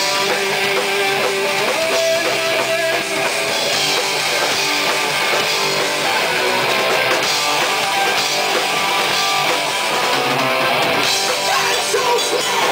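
Live rock band playing: two Les Paul-style electric guitars over a drum kit, loud and continuous.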